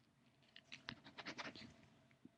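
A pen scratching on a duct tape sheet in a quick run of short strokes, from about half a second in until shortly before the end.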